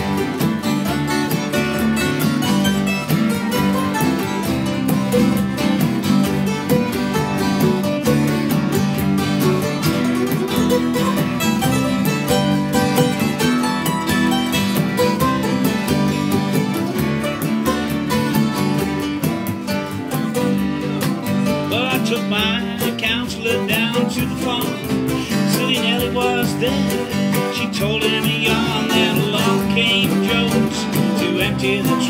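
Acoustic folk band playing an instrumental break: strummed and plucked strings, fiddle and hand drum. A high, wavering fiddle melody comes to the fore about two-thirds of the way through.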